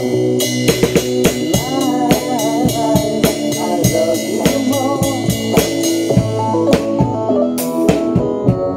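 Acoustic drum kit played along with a recorded pop song: a steady run of drum and cymbal hits over the record's pitched instruments.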